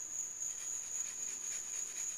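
A cricket trilling: one steady, unbroken high-pitched tone.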